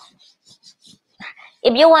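Whiteboard eraser rubbed across a whiteboard in several faint, short strokes, followed by a woman starting to speak.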